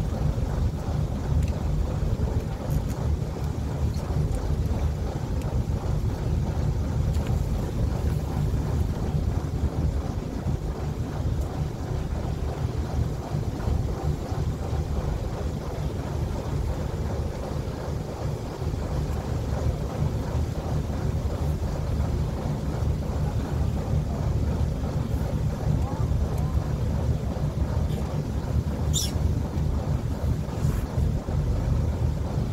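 Wind buffeting the microphone over the steady low rumble of a small fishing boat at sea. A brief high chirp comes near the end.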